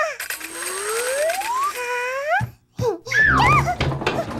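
Cartoon sound effects: a long, smooth rising glide in pitch, then a shorter rising glide. After a brief pause comes a character's short, high-pitched gibberish cry over a low thud.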